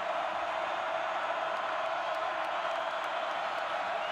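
Large stadium crowd cheering and yelling in a steady, unbroken roar.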